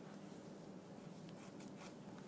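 Faint rubbing and a few light ticks of beading thread being drawn through seed beads, over a low steady hum.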